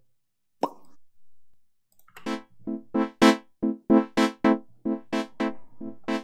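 Synthesizer chord stabs from Bitwig's Polysynth, played in an uneven rhythmic pattern by the Note Repeats device, about three to four hits a second, starting about two seconds in. An LFO sweeps the filter, so the hits change in brightness from one to the next. There is a short, single sound about half a second in.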